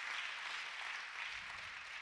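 Audience applauding: an even patter of clapping that eases off slightly toward the end.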